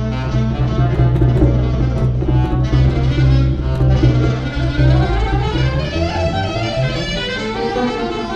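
Instrumental music with a double bass playing strong sustained low notes, and other pitched lines moving above it.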